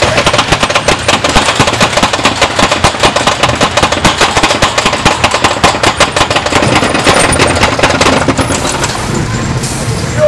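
Roller coaster train climbing a chain lift hill, the lift chain and anti-rollback ratchet clattering in rapid clicks. The clatter thins out about seven seconds in as the train nears the crest.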